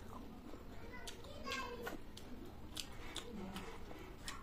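Close-up chewing and lip-smacking of someone eating momos, with a run of sharp wet mouth clicks through the second half. A voice is heard briefly a little over a second in.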